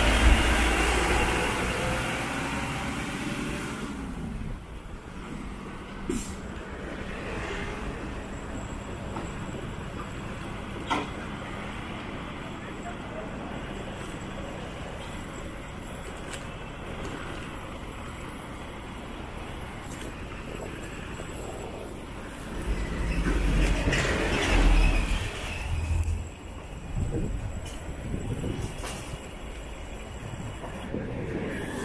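Street ambience with a steady background traffic hum. Louder passing-vehicle noise fades over the first few seconds, and a vehicle passes again from about 23 to 26 seconds in.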